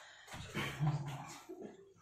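A man's voice making a few short sounds without clear words.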